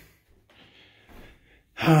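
A man's breath drawn in between phrases, a faint hiss lasting about a second; his speech starts again near the end.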